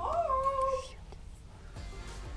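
A single high, drawn-out call that rises in pitch and then holds, lasting just under a second and stopping about a second in.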